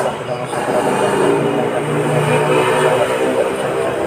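A group of men reciting dhikr together in unison, chanting with long held notes.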